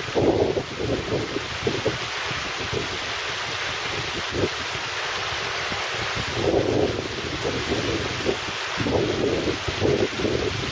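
Shallow river rushing steadily over flat rock shelves, with gusts of wind buffeting the microphone as low rumbles at the start, about six and a half seconds in, and again near the end.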